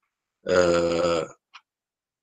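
A man's drawn-out hesitation sound, a steady 'aah' held for about a second, then a faint click.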